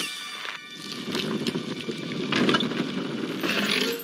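A film sound effect of a rough, rumbling scrape with several rushing swells, over faint orchestral score.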